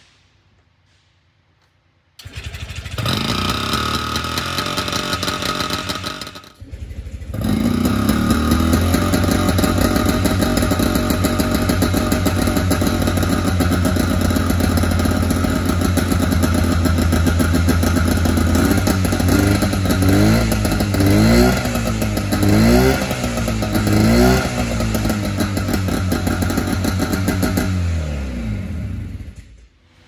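Berkeley SE328 sports car's small two-stroke twin engine cold-started: it fires about two seconds in and runs a few seconds, falters, catches again and runs steadily, is revved up and down several times, then is switched off just before the end.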